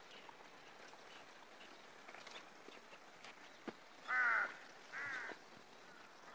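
A bird calling twice: two loud short calls about a second apart, the first the louder, over faint outdoor background.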